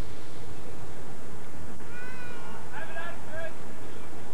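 Distant high-pitched shouts over steady outdoor noise on an old camcorder recording. The calls come about halfway through, one after another over a second or so.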